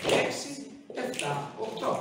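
A man counting the dance steps aloud in Greek, one number at a time, with pauses between the counts.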